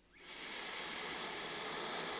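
A woman drawing one long, deep breath in through her nose: a steady airy hiss that swells in over the first half-second and holds.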